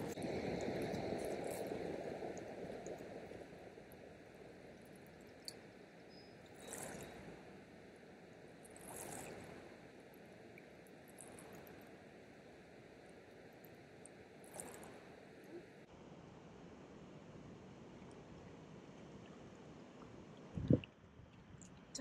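Faint lakeshore ambience: water lapping with light wind noise, a little louder in the first couple of seconds, then a few soft swishes and a single short knock about a second before the end.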